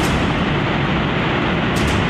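Muddy flash-flood torrent rushing down a river valley: a steady, loud wash of water noise with no break.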